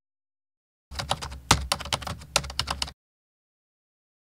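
Computer keyboard typing sound effect: about two seconds of rapid key clicks, roughly six or seven a second, cut in and out abruptly.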